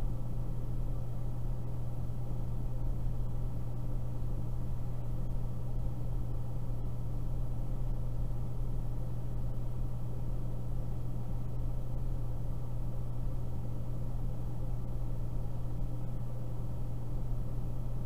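A steady low hum with an even haze of noise above it, unchanging throughout, with no speech.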